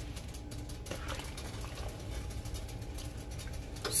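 Pot of homemade herbal tea bubbling at the boil, a steady low bubbling.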